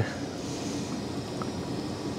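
Steady background hiss of room noise, with no distinct sound events.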